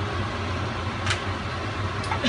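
A steady low mechanical hum with a haze of background noise, and a faint light click about a second in.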